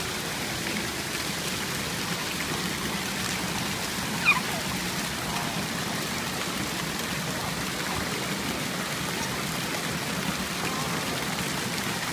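Steady splashing and pouring of water-play fountain jets into a shallow pool. About four seconds in comes one short high squeak that falls in pitch.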